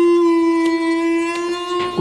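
A single long, steady note from a wind instrument, held at one pitch and stopping shortly before the end, with faint soft ticks recurring about every 0.7 seconds.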